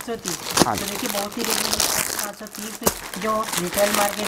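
Clear plastic wrappers on packed suits crinkling and rustling as the packets are handled and laid down on top of one another.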